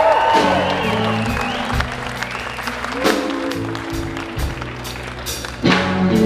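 A live blues-rock band playing, with an electric guitar bending notes in the first second over held bass notes, while the crowd applauds. Sharp drum hits come in near the end.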